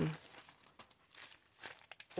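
Thin clear plastic bag crinkling as it is handled, a few faint, irregular crackles.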